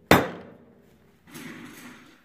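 A single hammer blow on a Bafang 500 W geared hub motor's planetary gear assembly, a sharp metallic strike with a short ring, driving the plastic planetary gears loose from the motor. A fainter scuffling handling noise follows in the second half.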